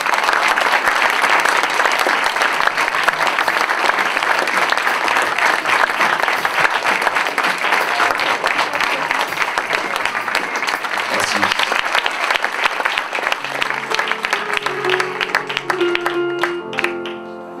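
Audience applauding. Piano notes come in near the end as the applause fades.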